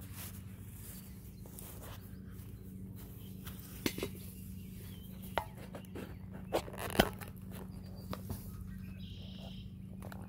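Handling noise of a camera being set up and fastened in place: a few scattered clicks and knocks, the sharpest about seven seconds in, over a faint steady low hum.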